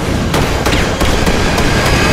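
Loud, dense film-trailer sound mix: a rapid, irregular run of sharp impacts, about eight in two seconds, over a deep rumble and music.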